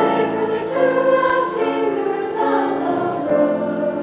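A school choir singing together in held chords, the notes changing about every half second, with a couple of brief sung 's' consonants.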